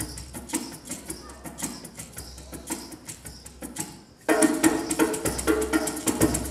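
Live percussion music led by a hand drum struck in a steady rhythm, fairly quiet at first. After a brief drop about four seconds in, the music comes in abruptly louder and fuller.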